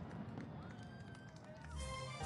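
Fireworks display dying away: scattered faint crackles after the loud bursts, thinning out. Music with steady keyboard-like notes comes in near the end.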